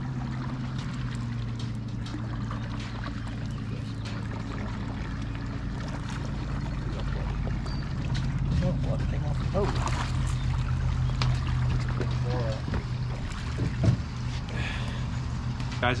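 A flathead catfish splashing at the surface as it is drawn into a landing net beside a boat, about halfway through, over a steady low hum from the boat.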